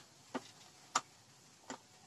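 Three faint, sharp clicks, spaced evenly about two-thirds of a second apart, as stripped speaker wire is handled and worked into the speaker terminals on the back of an amplifier.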